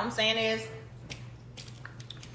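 A woman's drawn-out "Woo!" in the first second, an exclamation at the burn of spicy food in her mouth. A few faint clicks follow over a low steady hum.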